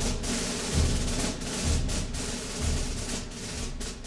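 Orchestral percussion passage with no singing: low drum beats about once a second, with sharp snare-like strokes between them, in a march-style lead-in.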